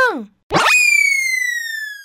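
Cartoon sound effect: a quick upward sweep, then a single electronic tone that glides slowly downward and fades away over about a second and a half.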